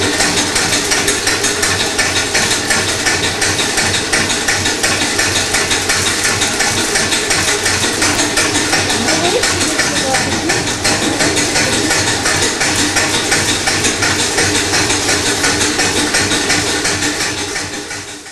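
Belt-driven stone flour mill running, its millstones grinding corn into flour with a steady mechanical rattle on a fast, even beat.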